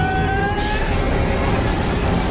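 Sci-fi sound effect of a descending craft: a loud, steady low rumble with a slightly rising whine that fades out a little under a second in.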